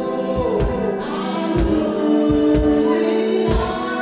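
Live dream-pop band: a woman singing lead into a microphone over electric guitar and drums. Her long, wavering vocal lines ride over recurring kick-drum beats.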